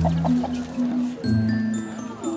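A domestic hen clucks a few short times in the first half second, over background music with sustained low notes.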